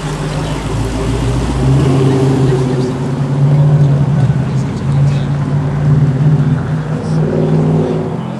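Dodge Challenger Hellcat's supercharged V8 pulling away at low speed, a deep exhaust rumble that swells several times with light throttle.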